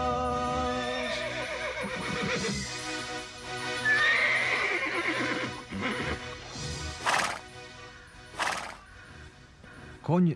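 A cartoon sound effect of a horse whinnying loudly about four seconds in, as the black colt rears, over the fading last notes of background music. Two short, sharp rushes of noise follow near the end.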